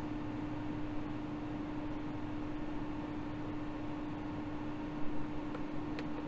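Steady machine hum, one held tone over a hiss of moving air, with a faint click about five seconds in as a button on the fan's VFD keypad is pressed.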